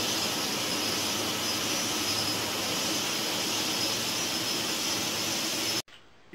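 Jet airliner engines during takeoff: a steady rushing noise with a faint high whine that cuts off suddenly near the end.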